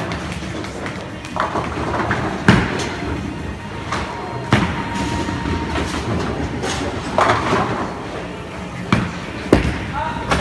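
Bowling alley: a steady low rumble of balls rolling down the lanes, broken by four sharp crashes of balls hitting pins, the loudest about two and a half seconds in.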